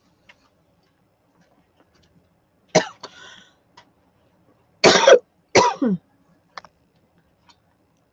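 A woman coughing: one cough about three seconds in, then two more close together about five seconds in, the last one dropping in pitch.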